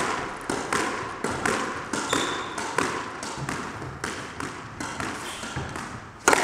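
Squash ball volleyed repeatedly against the front wall in a straight-volley drill: racket strikes and front-wall hits in a steady rhythm of about two a second, each ringing briefly in the court.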